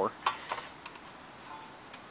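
A few faint clicks of hands handling the electric lawn edger's plastic blade guard, over a quiet background; the edger is not running.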